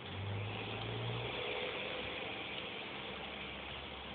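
A motor vehicle engine running: a low steady hum for the first second or so, then a rushing noise that carries on.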